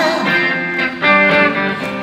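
Live rock band playing in a gap between sung lines, an electric guitar's held chords to the fore. A louder chord is struck about a second in.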